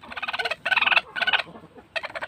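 A broody hen sitting on eggs in a nest box, growling in three short, rapidly rattling bursts as a hand reaches in beside her. The keeper takes her for a hen gone broody.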